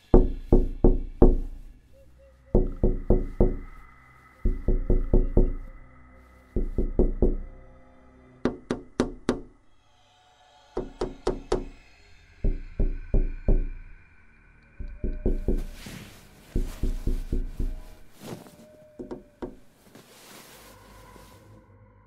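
Knocking in quick bursts of four or five raps, about one burst every one and a half to two seconds, weaker toward the end. Under it runs a held music tone.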